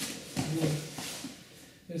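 A man's voice, with brief speech or vocal sounds about half a second and a second in.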